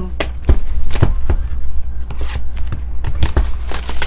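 A cardboard trading-card box and cards being handled: irregular knocks, taps and scuffs, about a dozen in four seconds, over a steady low hum.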